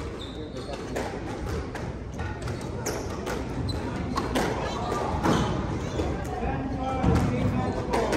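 Squash rally: a string of sharp knocks, irregularly spaced about a second apart, as the rubber ball is struck by the rackets and rebounds off the walls, echoing in the hall.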